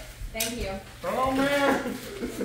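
Voices of people calling out, in two short stretches, with a brief sharp crackle about a third of a second in.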